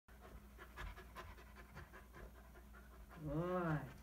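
Airedale terrier puppy panting softly, then near the end a drawn-out voice sound that rises and falls in pitch.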